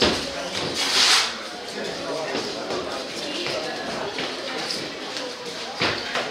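Sharp smacks of blows landing in a savate bout, one at the start and another shortly before the end, over voices in a sports hall. About a second in there is a loud hissing burst.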